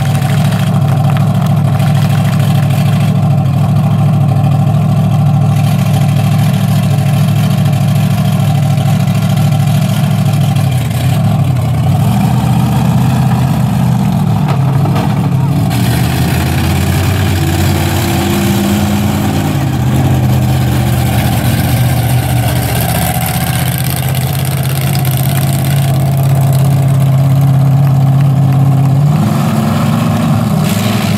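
Raminator monster truck's Hemi V8 idling loudly and steadily, its pitch wandering up and down for several seconds through the middle before it settles back to a steady idle, rising again briefly near the end.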